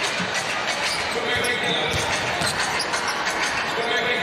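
A basketball being dribbled on the hardwood court, short knocks under a steady murmur of arena crowd noise.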